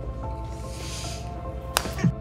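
Background music, with one sharp knock near the end from a hammer striking a small toy doll.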